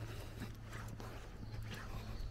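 Footsteps of a person walking on a pavement, faint, over a steady low hum of street background.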